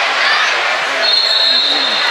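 Loud background din of a busy wrestling-tournament hall: many distant voices over a steady wash of noise, with a steady high-pitched tone coming in about a second in.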